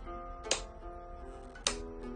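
Flamenco guitar played fingerstyle in a slow, even arpeggio, the thumb then the fingers picking one note after another. A metronome app clicks twice, about a second apart, at roughly 52–56 beats a minute.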